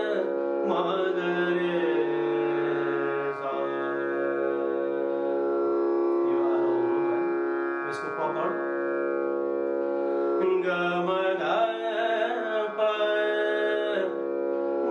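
A man singing phrases of Raag Bhairav with gliding ornaments between notes, over a harmonium holding long sustained notes.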